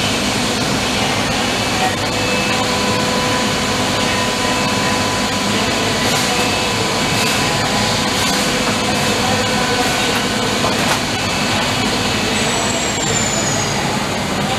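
Steady machine-shop noise from running machines nearby: an even rush with faint steady hums, and a thin high whine that falls in pitch near the end.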